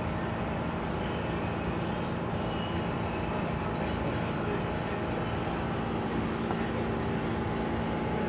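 Steady hum of a New York City subway car standing at a station platform: ventilation and electrical equipment running at an even pitch with a few steady tones. There is no sign of the train moving.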